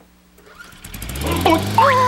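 A lawn mower engine starts up, rising in level over about a second from half a second in, then running steadily. A voice gasps near the end.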